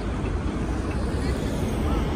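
Busy city street ambience: a steady rumble of road traffic with indistinct voices of passers-by.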